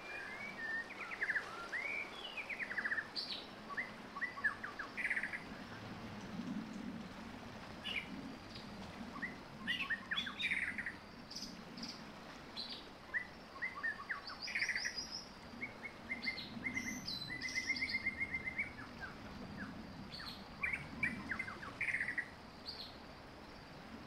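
Birds chirping, a mix of short chirps and rapid trills that come and go throughout, over a faint steady hiss.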